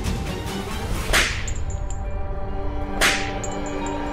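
Two dramatic whoosh sound effects, about two seconds apart, each a quick rising swish, over a held background music chord.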